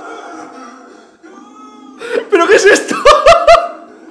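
A man laughing loudly: a quick run of about six short bursts in the second half.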